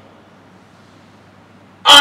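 A pause with only a faint room hum, then, near the end, a man's loud, held shout over a PA system that starts suddenly.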